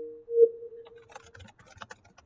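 Computer keyboard typing: a quick run of key clicks through the second half, after a held electronic tone fades out in the first second.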